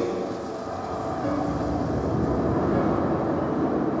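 A dense low rumble swelling in loudness over the few seconds, part of the soundtrack of an immersive projection show, with faint music beneath it.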